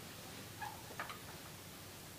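Faint taps and clicks of a cello being lifted into playing position, over quiet room tone; two small clicks just past the middle.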